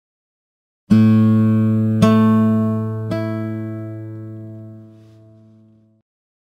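A single low guitar note struck three times, about a second apart, each strike ringing on and the last fading slowly away.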